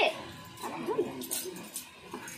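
A toddler's soft whimpering, a few rising-and-falling cries, with a little water splashing in a metal bath basin.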